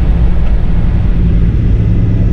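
Semi-truck's diesel engine and road noise heard from inside the cab as a steady, loud low drone with an even engine hum while the truck rolls slowly.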